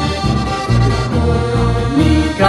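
Live folk music from a trio: a button accordion carries the tune over strummed acoustic guitar and upright double bass, with the bass notes marking a steady beat.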